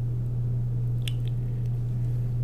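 Steady low hum, with a couple of faint clicks about a second in.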